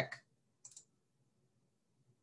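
A faint, short double click about two-thirds of a second in, otherwise near silence.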